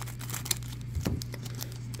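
Foil wrapper of a Topps 2022 Opening Day baseball card pack crinkling in the hands as it is handled, a scattered string of small, sharp crackles.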